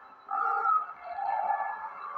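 A pig screeching in a horror film's soundtrack, heard through the screen's speaker; the screeching starts about a third of a second in.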